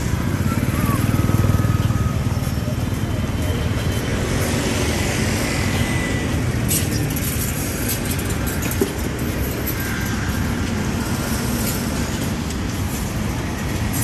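Street traffic: small motorbike engines and cars running past, one motorbike passing close about a second in, over a steady traffic rumble.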